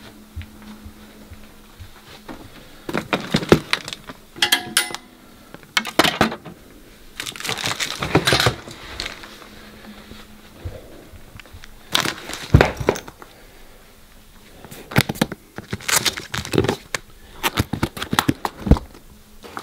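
Irregular handling noises: knocks, rustles and clicks from moving through a room and handling a saxophone case, with a cluster of sharper clicks near the end as the case's metal latches are undone. A faint low hum sits underneath for the first half.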